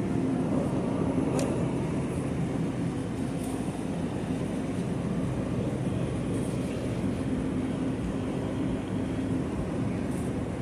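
Steady hum and hiss of open refrigerated display cases and store ventilation, with a faint steady tone running under it. A few faint ticks, like a plastic tub being handled, sit on top.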